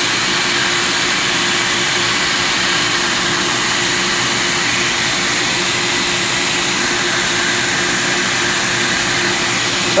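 Tamarack splicer's vacuum running: a steady rushing noise with a constant hum underneath. It is the suction that holds the splice tape on the vacuum bar.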